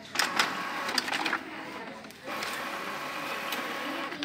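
An Epson L3210 inkjet printer running a print job: the paper feed and print-head carriage run with clicks for about a second and a half, ease off briefly, then run steadily again from just past two seconds in as the sheet is printed.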